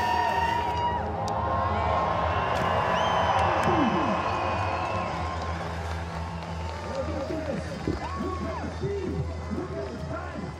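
Spectators cheering and shouting over music, with many short whooping calls in the second half.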